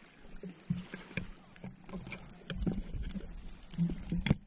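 Handling noise of a handheld camera being lowered and set down on a pebble beach: irregular clicks and knocks of the camera and hands against the stones, with low thuds, growing busier toward the end.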